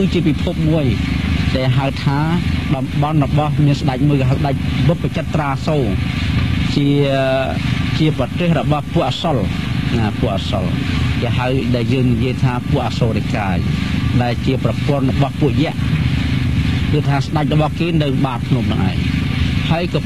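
Speech: a man giving a Buddhist dharma talk in Khmer, talking without a break.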